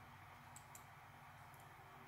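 Near silence with a few faint clicks, as a computer pointer clicks on a settings tab, over a low steady electrical hum.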